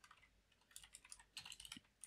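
Faint computer keyboard typing: a quick run of light keystrokes in the second half.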